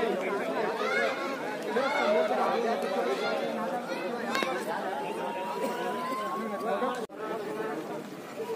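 A crowd of men talking and calling over one another at close range, with a thin tone rising slowly in pitch for about two seconds in the second half. The sound drops out for an instant near the end.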